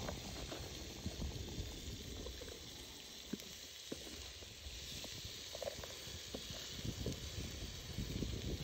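Faint sizzling and rustling as chopped greens and cabbage drop into a hot steel cooking pot, with scattered light clicks over a steady low rumble.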